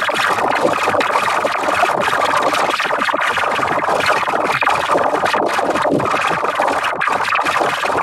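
Dense, heavily distorted wall of layered audio effects: a steady, loud cacophony full of clicks and crackle, with no clear tune or voice.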